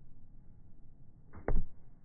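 A kicking foot strikes an American football held on a kicking holder, making one sharp thump about one and a half seconds in, with a lighter hit just before it.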